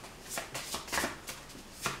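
A deck of angel-number oracle cards being shuffled by hand: a quick, uneven run of short card swishes, about two or three a second.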